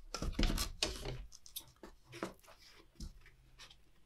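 Cardboard and a cardboard tube being handled and moved: rustling, scraping and light knocks, busiest in the first second, then a few scattered clicks.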